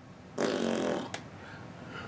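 A man blowing a puff of air out through pursed lips, lasting about half a second, followed by a single sharp click.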